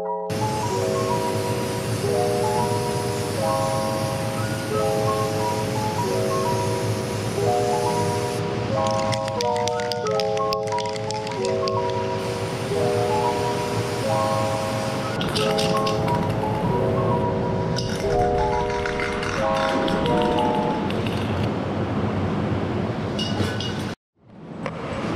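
Background music: a melody of short stepped notes that repeats in the same pattern every couple of seconds.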